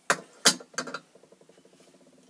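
Handling noise: a couple of sharp clicks and rustles in the first second as a small shell ornament is picked up and handled, then a few fainter ones.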